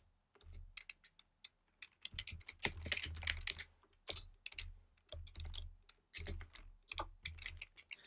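Typing on a computer keyboard: fairly quiet runs of key clicks broken by short pauses.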